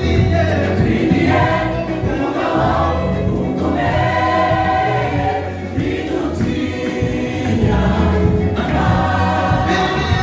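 Live gospel music: a group of singers singing together into microphones over a backing band with keyboard and a steady bass line.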